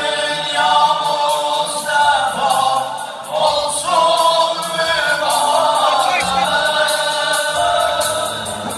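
Several men's voices singing together into microphones, amplified through a PA: an Azerbaijani devotional song for the Prophet's birthday (mövlud), in long held, wavering notes.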